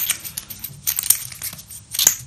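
Irregular light clicks and ticks of plastic and metal as a small LED bulb's threaded metal base is fitted to a plastic lamp socket and turned in by hand.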